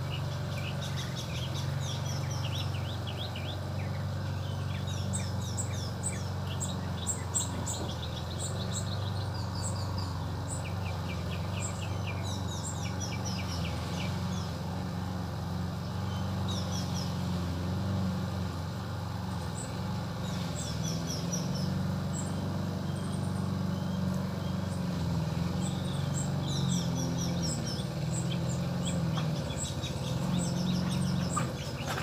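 Small birds chirping in many short, quick calls throughout, over a steady low hum.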